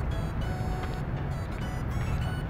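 Background music on the end screen, with a heavy low bass and held high notes that change every half second or so.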